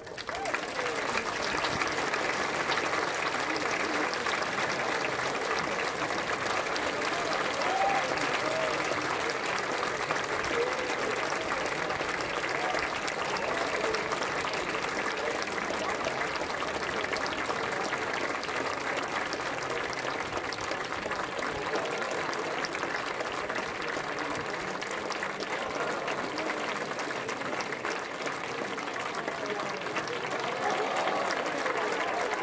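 Large audience applauding steadily, the clapping holding an even level throughout.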